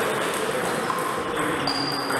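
Table tennis ball pinging lightly on the table and bat between points as the server gets ready, over the steady background noise of a sports hall. A short high tone sounds near the end.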